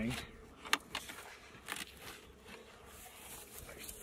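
Metal pry bar working into the joint between stacked polystyrene hive boxes as they are pried apart: low scraping with two sharp cracks about a second in.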